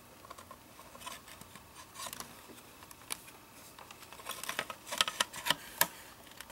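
Plastic shell halves of a DJI Phantom quadcopter clicking and rubbing as the top cover is fitted onto the lower airframe. Light scattered clicks build to a quick run of sharper snaps in the last two seconds as the cover is pressed home.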